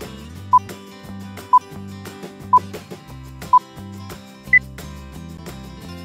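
Quiz countdown timer beeps over background music with a steady beat: a short beep once a second, four at the same pitch, then a fifth, higher beep about four and a half seconds in, marking the end of the countdown.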